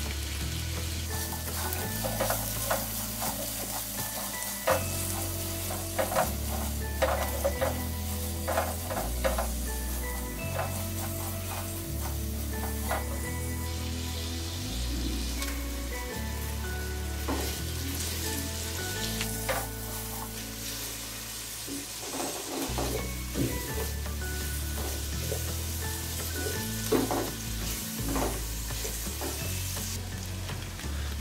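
Sliced onions sizzling steadily in hot oil in a non-stick pot, with a spatula stirring and scraping against the pan in short scattered strokes.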